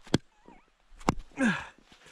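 Two sharp knocks about a second apart: a log used as a baton striking the spine of a knife driven into a frozen log round to split it, the knife wedged fast in the wood. A short grunt follows the second knock.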